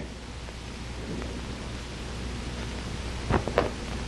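Steady hiss and low hum of an old film soundtrack, with a few faint clicks a little past three seconds in.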